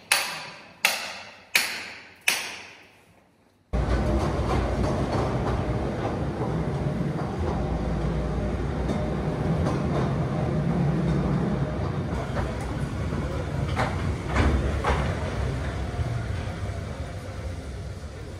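Several ringing hammer-on-chisel strikes against rock, evenly paced about one every three-quarters of a second. A sudden cut then brings in a mine train running through a rock tunnel: a steady low rumble with a few clanks.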